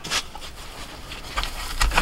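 Faint scrapes and rustles of a piece of foam pool noodle being handled and pushed into a flanged hole in a plywood window panel: one short scratchy sound just after the start and a couple more near the end.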